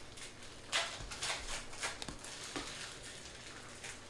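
Stiff chrome trading cards sliding and brushing against each other as a stack is flipped through by hand: a few soft swishes in the first two seconds, then quieter.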